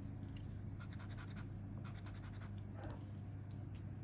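Scratch-off lottery card being scraped with a hand-held scraper: quick, repeated short scraping strokes over the card's coating, with a steady low hum beneath.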